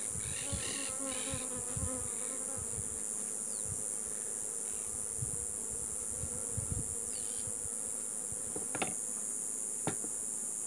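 Honeybees buzzing around open hives, one flying close by with a wavering hum in the first couple of seconds. Two sharp knocks near the end come from the beekeeper working at a hive box.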